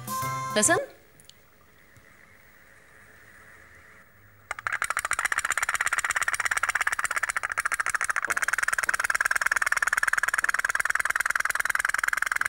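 Toy pop-pop boat, its candle-heated pipes starting to putter about four and a half seconds in: a fast, even popping, many pops a second, as steam escapes from the pipes in pulses.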